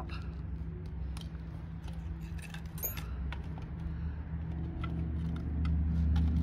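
Scattered small clicks and metallic clinks as bow-drill gear and a metal plate are handled on stone pavers, over a steady low rumble that swells near the end.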